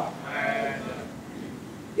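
A faint, quavering human voice that wavers in pitch and fades away within the first second, leaving only low background sound.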